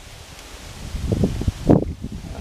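Wind buffeting the microphone: low rumbling gusts that pick up about a second in, the strongest just before the end.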